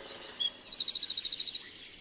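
Eurasian wren singing: quick high chirps, then a fast trill of evenly repeated notes about a second in.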